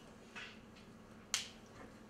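A single sharp click about a second and a half in, after a softer short hiss near the start, over a faint steady hum in a quiet room.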